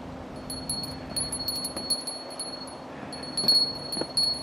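Bright metallic jingling, like a small bell: many quick, irregular rings of one high tone, starting about half a second in and coming thicker near the end.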